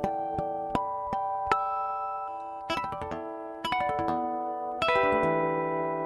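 Taylor acoustic guitar finger-picked in natural harmonics, heard through a Seymour Duncan SA-6 MagMic soundhole pickup with a little reverb. It opens with a run of single ringing harmonic notes, about two or three a second. After about two and a half seconds these give way to three fuller chords that ring on.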